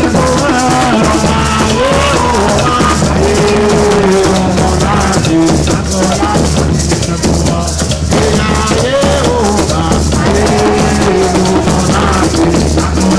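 Live Garifuna drumming: several hand drums beaten with bare hands, a pair of shakers giving a constant rattle on top, and voices singing a melody over the rhythm.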